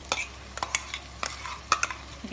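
Tomato and almond paste sizzling as it drops into masala frying in hot oil in a kadai, with scattered sharp clicks and pops over the steady frying.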